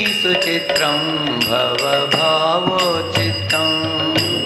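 Devotional kirtan chanting: a sung voice gliding through the melody, with metallic hand-cymbal strikes ringing a couple of times a second.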